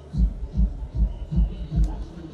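Five low, evenly spaced thumps, about two and a half a second, over a steady low hum.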